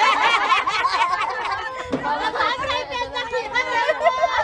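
Several people talking at once close by, their voices overlapping in casual chatter.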